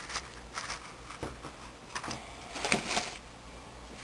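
Faint handling noises: a few light knocks and rustles as plastic laundry tubs and a scoop are moved about.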